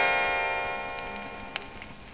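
A bell-like chime, the held notes of a quick rising run ringing on together and slowly fading away, with one vinyl surface click a little past halfway; the typical page-turn signal of a read-along storybook record.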